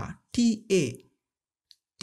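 A person's voice saying a few short, clipped syllables in a pronunciation drill, then a pause broken by one faint click near the end.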